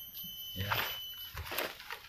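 Dry bamboo leaves rustling and crackling as they are dropped by hand, a little at a time, onto a taro leaf, in two short bursts.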